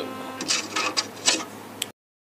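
The last held notes of a Yamaha PSR-SX700 arranger keyboard die away. Then about six short, irregular clicks and knocks come from hands on the keyboard. The sound cuts off suddenly just before the end.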